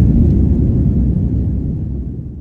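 Steady low rumble of cabin noise inside a Turkish Airlines jet airliner in flight, the engines and rushing air heard from a window seat, easing slightly near the end.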